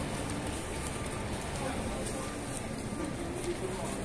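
Busy pedestrian street ambience: passers-by talking in the background and footsteps on stone paving.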